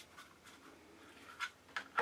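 Faint handling sounds: light clicks and rubs as a plastic guitar pickup is picked up and pressed into a freshly sawn slot in the guitar's side to test its fit, with two clearer clicks near the end.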